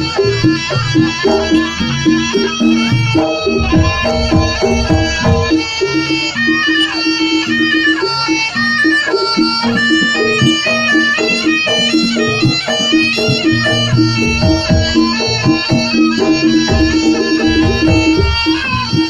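Live Javanese jaranan music: a reedy, shawm-like wind instrument plays a wavering melody over held low tones and drum strokes, loud and continuous.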